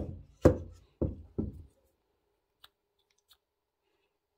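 Four hollow knocks about half a second apart, each ringing briefly, as the plastic thermostat housing is handled and knocked against the wooden workbench; a couple of faint clicks follow.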